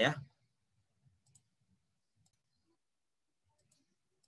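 Faint computer mouse clicks, a few short sharp ticks in small groups: a pair about a second in, one just past two seconds, and another pair near the end.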